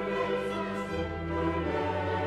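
Choir and orchestra performing an 18th-century Mass setting, with sustained chords over strings; a new low bass note comes in about halfway through.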